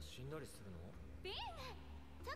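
Faint Japanese anime dialogue played quietly in the background: high, gliding young voices exchanging a few lines.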